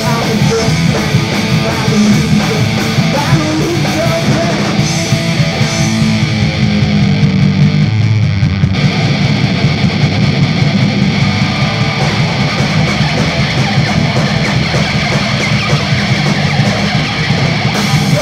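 Live punk/metal band playing loud: distorted electric guitar, bass and drums. Around the middle the sound thins out for a couple of seconds, then the full band comes back in.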